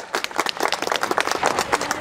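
Many people clapping: a quick, irregular patter of hand claps.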